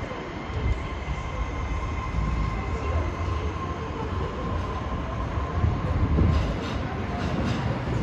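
Kobe Municipal Subway 6000-series electric train pulling out and accelerating away, its wheels rumbling on the rails. A steady high electric whine from the drive runs for the first five seconds or so, and a few clicks come later.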